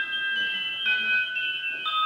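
Electronic tune from a ghost-hunting music-box trigger device, a few steady high-pitched notes held together that change pitch about once a second. It is playing because someone is standing right next to it.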